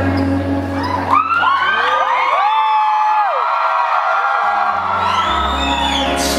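Live music on a Roland keyboard with a held low bass chord that drops out about a second in, while audience members whoop and cheer in overlapping rising and falling calls; the low keyboard notes come back in near the end.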